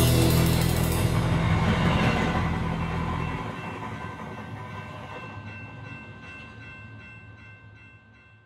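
A train running on rails that fades away into the distance, its sound growing duller as it goes, while a last held chord of music dies out beneath it.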